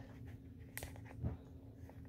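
Faint handling noise from a phone camera on a tripod being moved: a short click about three-quarters of a second in and a soft thump a little after a second, over a steady low hum.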